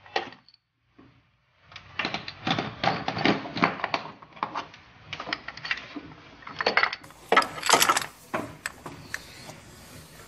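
Irregular metallic clicks and clatter of hand work on the engine mount bolts in a car's engine bay, starting about two seconds in.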